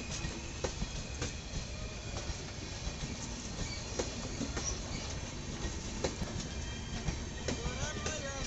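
Passenger train coaches rolling past on curving track: a steady low rumble with sharp clicks as the wheels cross rail joints at irregular intervals, and a thin, faint wheel squeal.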